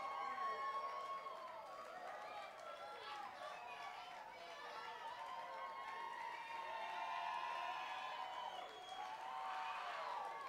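A concert audience: many voices talking, calling out and cheering at once, with no band music.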